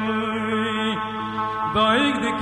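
Kurdish folk song: a long sung, chant-like note over a steady low drone. The note falls away about a second in, and a new note rises near the end.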